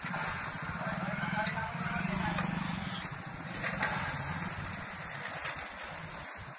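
Wooden toothed rake dragged through a layer of loose granules on concrete, a steady rough scraping and rustling, with a low hum and indistinct voices underneath.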